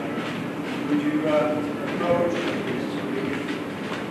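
Indistinct talk from several people in a large, reverberant room, with no clear words.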